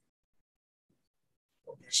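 Near silence, a pause in a video-call meeting, until a person's voice starts just before the end.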